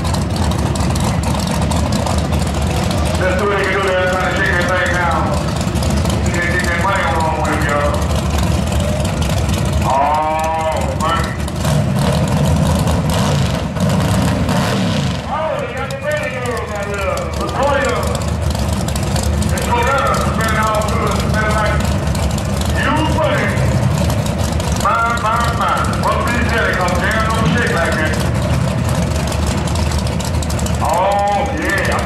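A drag-race car's engine idling with a steady low rumble, with people's voices talking over it.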